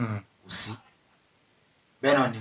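A man's voice in a small studio: a short sound with a sliding pitch, then a brief hissing 'sh'-like sound about half a second in. A second of silence follows.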